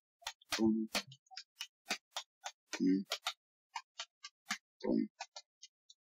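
Rapid ticking of an on-screen spinning name-picker wheel, about four or five sharp ticks a second, spacing out a little as the wheel slows.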